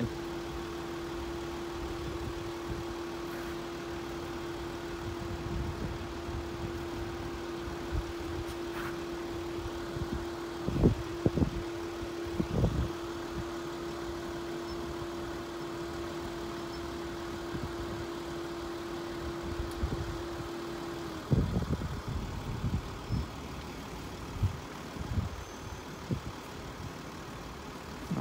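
A road vehicle's engine idling with a steady hum that cuts off abruptly about two-thirds of the way through, over low traffic rumble. A few brief louder rumbles come around the middle and after the hum stops.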